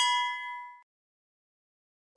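A single bright bell ding from a notification-bell sound effect. It rings out and fades away within about a second.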